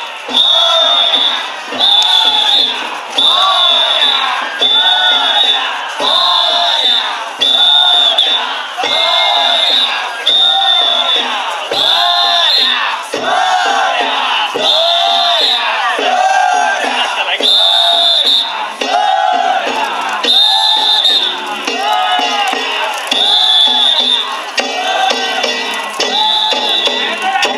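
Danjiri rope-pullers chanting a rhythmic call in unison, with a whistle blown on each beat, a little slower than once a second throughout.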